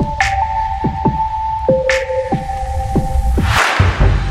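Instrumental passage of a melodic dubstep track: heavy throbbing sub-bass under held synth notes, punctuated by kick drums and two sharp snare hits. Near the end a rising noise swell comes in as the bass briefly cuts out.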